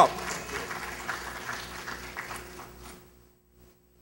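Audience applauding, a patter of many hands clapping that thins out and dies away about three seconds in.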